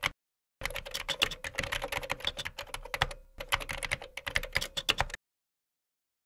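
Rapid keyboard typing: a quick string of key clicks with a short pause a little after three seconds in, stopping abruptly about five seconds in. It is a typing sound effect laid under text being typed out on screen.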